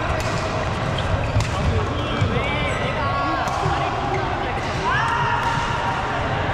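Badminton rally on an indoor court: sharp racket strikes on the shuttlecock, with court shoes squeaking on the floor, one squeak rising and held for about a second near the end.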